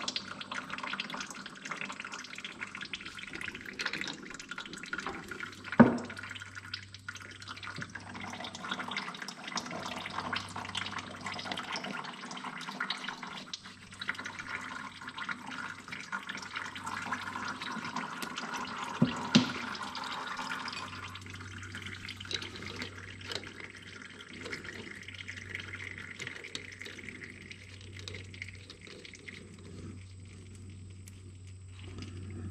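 Hydraulic oil running steadily out of a disconnected hydraulic line on an Oliver 1850 tractor, thinning to a lighter trickle past the middle. Two sharp knocks break in, about six and nineteen seconds in.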